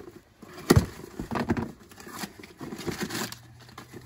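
Packaging rustling and crinkling as items are rummaged out of a cardboard shipping box, in scattered short bursts, with one sharp knock a little under a second in.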